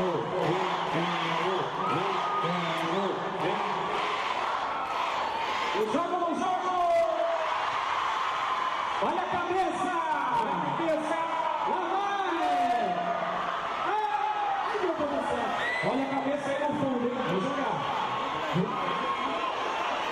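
A man speaking into a microphone over a PA, with a crowd's noise and occasional shouts behind him.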